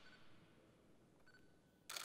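Near silence of a large room, then a quick burst of camera shutter clicks near the end.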